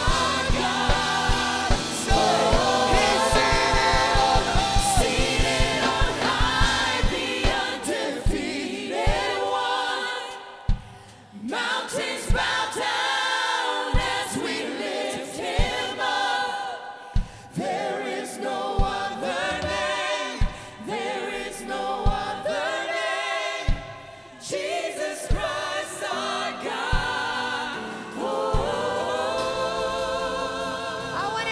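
Church worship band and singers performing a gospel worship song: a lead female voice with backing vocalists over band accompaniment. A kick drum beats quickly through the first several seconds, then falls to single hits a second or two apart, with a brief drop in the music about eleven seconds in.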